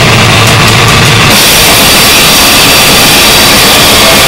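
Harsh noise music: a dense, distorted wall of noise at a constant, very loud level, with a heavier low rumble in the first second or so.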